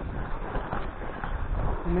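Footsteps crunching in snow, with wind rumbling on the microphone; a man's voice starts right at the end.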